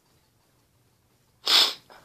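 A man sneezes once, sharply and loudly, about one and a half seconds in, followed by a brief smaller breath.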